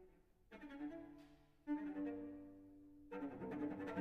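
Solo cello playing a contemporary piece: after a near-quiet moment, bowed notes enter about half a second in, a sudden loud accented note comes a little under two seconds in and is held, and a louder, busier passage begins near the end.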